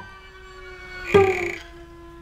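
Soft background music of steady held notes. About a second in, one short laugh with a falling pitch breaks in over it.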